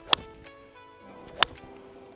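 Ben Hogan PTx Pro forged cavity-back 4-iron striking a golf ball off turf: a sharp click just after the start. A second click of the same kind follows about 1.3 s later, and steady background music plays throughout.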